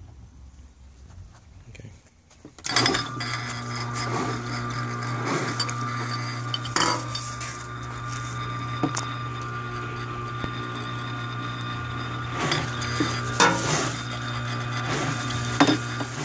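Submersible pump switching on about two and a half seconds in and running with a steady hum while water jets up through CPVC risers into upside-down glass bottles. The bottles clink and rattle against each other.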